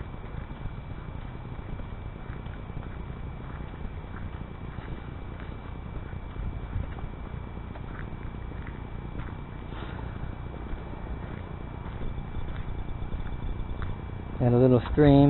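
Footsteps walking on a sandy dirt path, faint and irregular, over a low steady rumble.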